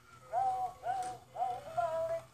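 Electronic toy ball (VTech Crawl & Learn Bright Lights Ball) playing its tune: a synthesized sung melody of about four short, evenly paced notes from its small built-in speaker.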